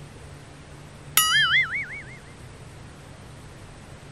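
A cartoon-style boing sound effect about a second in: a sudden twang whose pitch wobbles up and down and fades out within about a second.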